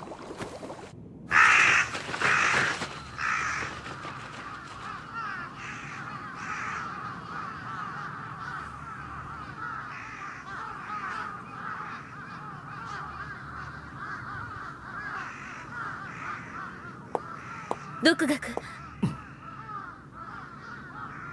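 A flock of crows cawing: a few loud caws a second or so in, then many overlapping calls in a continuous chorus.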